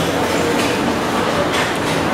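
Steady, loud din of a crowded hawker food centre: a continuous rushing roar with many overlapping background voices blended into it.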